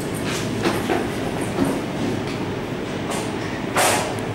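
1988 KONE traction elevator car travelling: a steady low rumble with scattered light clicks. A short, loud rush of noise comes just before the end as the car arrives at the landing.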